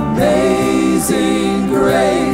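A worship team of several singers singing a slow worship song together over steady instrumental backing, holding long notes.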